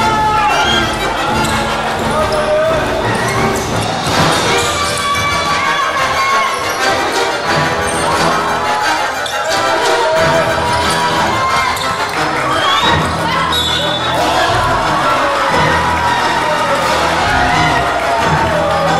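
A basketball bouncing on a hardwood gym floor during play, with music and voices throughout.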